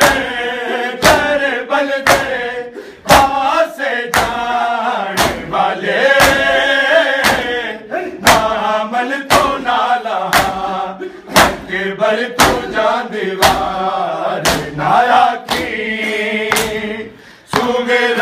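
A crowd of men chanting a noha together, with sharp, regular slaps of open hands on bare chests (matam) keeping the beat about twice a second.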